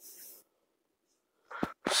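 A faint, short breath at the start, then near silence, then two quick mouth clicks just before speech resumes.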